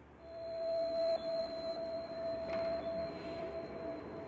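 Ambient meditation music fading in out of near silence: one steady held tone in the middle range, with a fainter high tone held above it.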